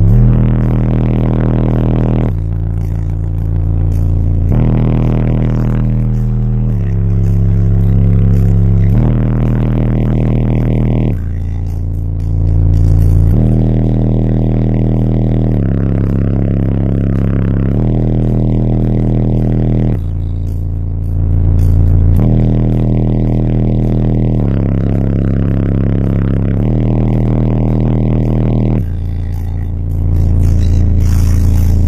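Bass-heavy music played very loud through a car audio system's two EMF Banhammer 12-inch subwoofers, heard from inside the car: a deep bass line stepping to a new note about every two seconds.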